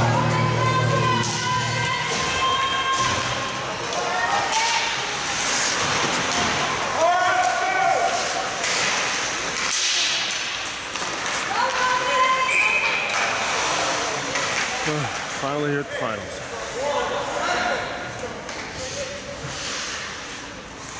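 Youth ice hockey game in a rink: sticks and puck knocking on the ice and boards, with players and spectators shouting indistinctly. Arena music with a bass line ends about two seconds in.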